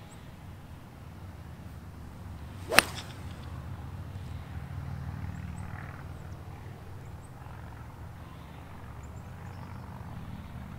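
A golf club strikes the ball off the tee about three seconds in: a single sharp crack from a full swing. A steady low rumble runs underneath.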